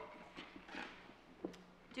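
Quiet room tone with a few faint, light taps and knocks, the clearest about one and a half seconds in.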